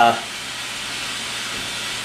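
A steady, even hiss with no change in level, after a brief spoken "uh" at the very start.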